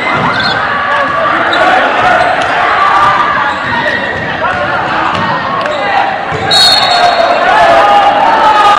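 Basketball being dribbled on a hardwood gym floor under spectators' overlapping talk and calls, which echo in the hall. A brief high-pitched squeal cuts through about six and a half seconds in.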